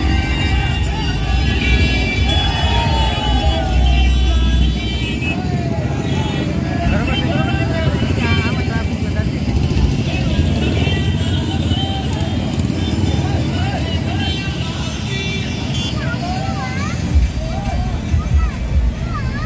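Many motorcycle engines running together in a crowded rally, a steady heavy rumble, with a crowd of voices shouting over it and music playing.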